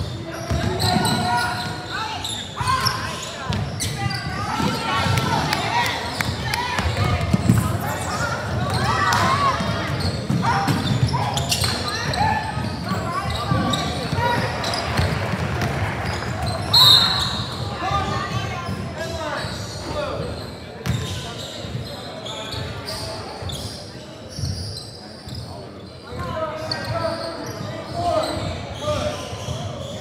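Basketball game in a gym: the ball bouncing on the hardwood court and players' voices echoing through the hall, with one short, loud referee's whistle a little past halfway.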